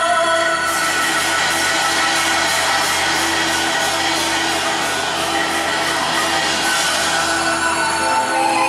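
Taiwanese opera (gezaixi) stage accompaniment music: held instrumental tones over a fast, even percussion beat, which stops near the end.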